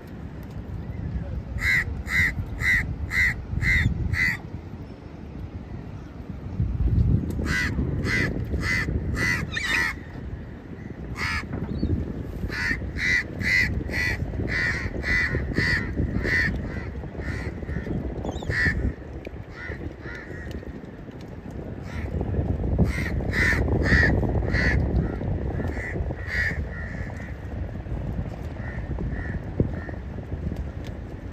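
A crow cawing in repeated runs of five to eight harsh calls, about two a second, with pauses between the runs. Under the calls is a low rumble of wind and water.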